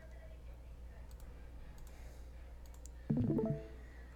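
A few faint computer mouse clicks over a steady low hum, with a short voiced sound about three seconds in.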